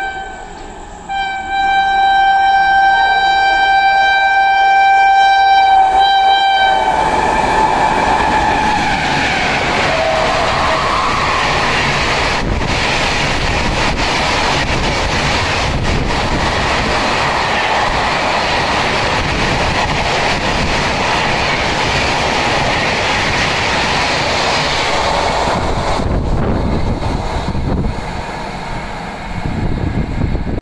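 Train horn sounding a long steady blast, broken briefly about a second in, that stops about seven seconds in as a train bursts through at high speed. The rushing roar of the passing coaches and their wheels on the rails, with occasional clacks, runs for about twenty seconds and fades near the end.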